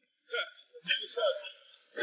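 A man's voice in short, broken vocal fragments with breathy catches and gaps between them, part of a half-spoken a cappella gospel recitation.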